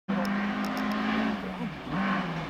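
Rally car engine approaching out of sight on a gravel stage, running at a steady high note, then the pitch dips and climbs again near the end.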